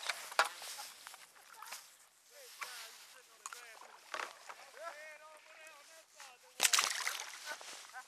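Handling noise and wet slaps as a small fish is unhooked from a jig at the water's edge, then a short loud splash about two-thirds of the way through as the undersized fish is thrown back.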